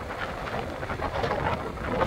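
Wind buffeting the microphone on a moving motorbike, a steady rumbling noise, with road and traffic sound beneath it.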